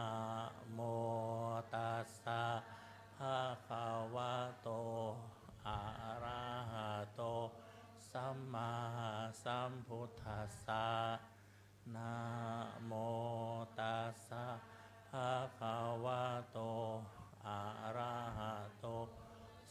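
Buddhist chanting in Pali: a voice reciting steadily in even syllables, with short pauses between phrases.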